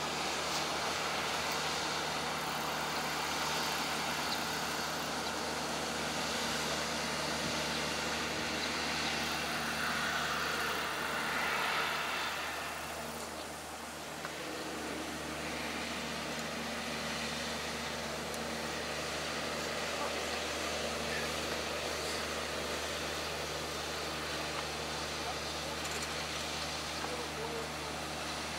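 An engine running steadily at idle, a low even hum under outdoor noise, dipping briefly about halfway through.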